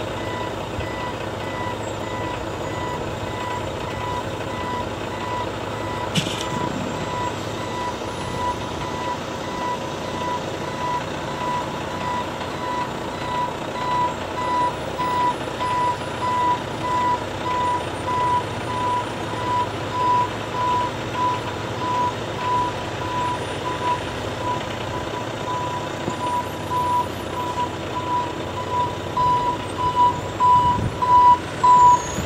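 A dump truck's reversing alarm beeping steadily in a regular series as the truck backs up, over the constant sound of its engine running. The beeps grow louder through the second half as the truck comes closer.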